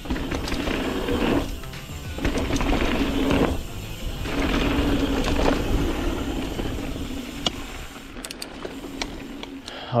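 Mountain bike ridden fast down a dirt and gravel jump line: tyres rolling over loose gravel, the bike rattling and knocking over bumps, and the rear freehub buzzing as the rider coasts, with wind rumble on the camera microphone.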